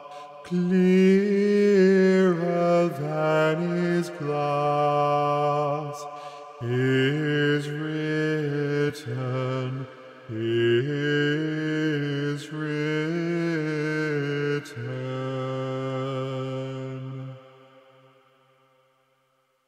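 Choir singing slow, held chords in a chant-like phrase, with the voices sitting low in pitch. The phrases break off briefly about six and ten seconds in, and the singing fades out near the end.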